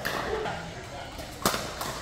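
Pickleball paddle striking a plastic pickleball: one sharp pop about one and a half seconds in, then a fainter tap, ringing in a large hall over a murmur of distant voices.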